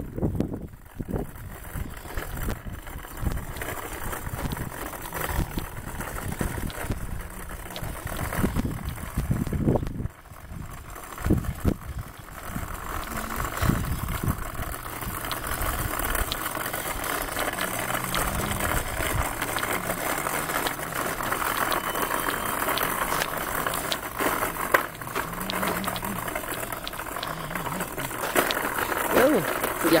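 A loaded wheeled cart rolling and rattling over rough asphalt as it is pushed along, with a steady rumble and scattered clicks and knocks.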